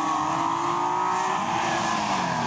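Mercedes 124 coupé rally car's engine running as the car drives at speed, its note falling slightly in pitch.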